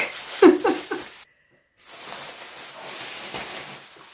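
Thin plastic dog poop bag rustling and crinkling steadily as it is untied and pulled open, after a brief bit of voice in the first second and a short dead gap.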